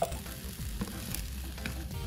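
Seasoned ground beef and drained pinto beans sizzling quietly in a nonstick skillet while a spoon stirs them.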